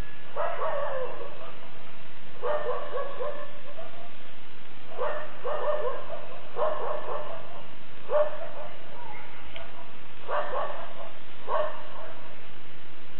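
A dog barking and yelping in short bouts, about seven times, each a quick run of calls that fall in pitch.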